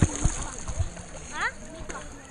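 Pool water splashing right at a camera held at the water's surface, with a few short splashes in the first second and lighter sloshing after.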